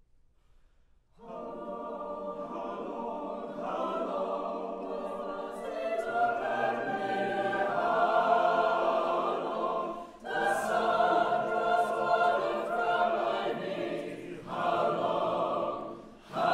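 Mixed chamber choir singing in parts. After a brief rest it comes in about a second in and grows louder, with two short breaks in the phrasing, one about two-thirds of the way through and one near the end.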